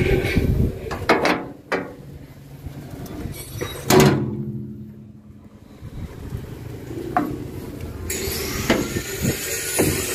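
Metal knocks and clatter from an excavator's steel toolbox and body, with one loud clang about four seconds in that rings on briefly, like the steel toolbox lid being shut, and a few lighter knocks as someone climbs onto the machine.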